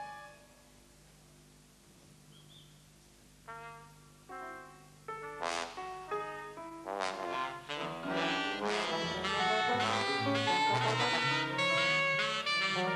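Live jazz big band: after a near-silent pause, a couple of short held chords, then the brass section of trumpet, trombone and tuba comes in and builds to full ensemble playing with low bass notes underneath.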